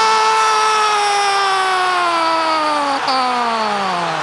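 A football commentator's long, drawn-out goal cry for the equaliser: one held shout that slowly sinks in pitch, with a brief catch about three seconds in.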